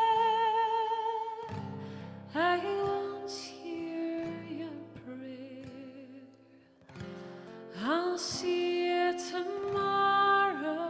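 Live performance of a slow, gentle song: a woman singing with vibrato, accompanied by acoustic guitar and keyboard. The music softens to a quiet lull a little past the middle, then the voice comes back in strongly near the end.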